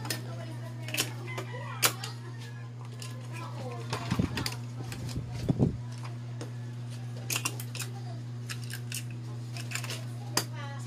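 Plastic toy pieces clicking and knocking as they are handled: scattered sharp clicks, with two heavier knocks about four and five and a half seconds in, over a steady low hum.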